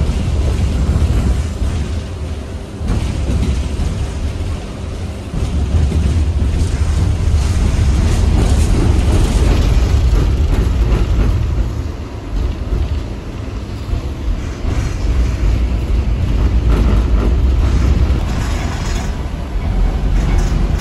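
A 71-407-01 low-floor tram in motion, heard from inside the car: a loud, steady low rumble of wheels on rail and running gear. It eases off briefly about two and a half seconds in and again around twelve seconds.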